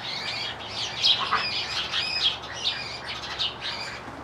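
Birds in a tree calling agitatedly, a rapid run of short, high calls one after another, which the onlooker takes for a bird being attacked.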